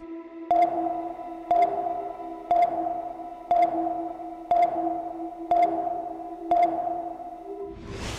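Electronic sonar-like pings, one about every second, seven in all, each fading out over a steady low hum, ending in a whoosh.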